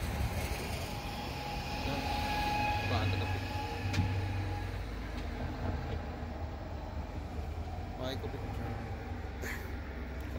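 Chairlift running: a steady low rumble, with a faint thin whine over it during roughly the first half.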